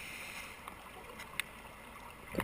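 Faint underwater ambience heard through a camera's waterproof housing: a soft, muffled hiss with a few small clicks, one sharper click about one and a half seconds in.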